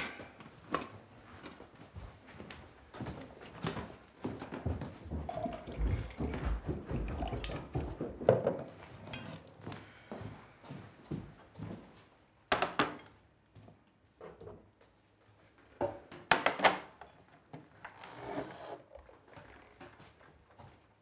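Kitchen clatter: cups and crockery being handled and set down on a wooden table, with scattered knocks and two louder clunks about twelve and a half and sixteen and a half seconds in.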